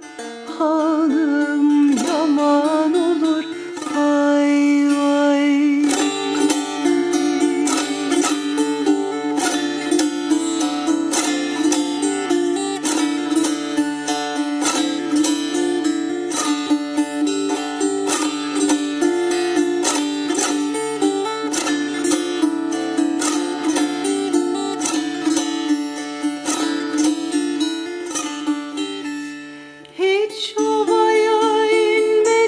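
A woman's voice finishes a sung phrase over a plucked long-necked ruzba lute. From about six seconds in the ruzba plays an instrumental passage alone: quick, dense plucked notes over a steady drone of open strings.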